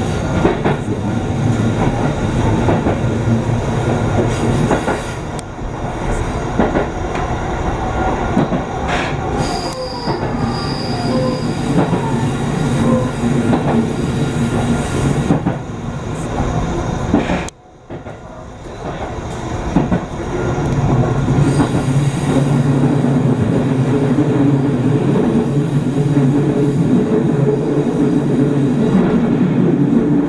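Electric train running along the rails, heard from inside at the front: the wheels rumble over the track and squeal on curves. The sound drops sharply for a moment just past halfway, then returns as a steady low drone.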